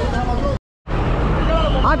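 Bus engine idling with a steady low rumble amid bus-stand background noise; the sound cuts out completely for a moment a little after half a second in, then a man's voice comes in near the end.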